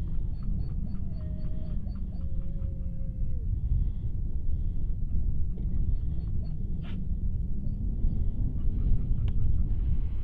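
Wind rumbling on the microphone with faint outdoor calls over it: a row of high chirps and one long falling tone in the first few seconds, and a couple of brief clicks later.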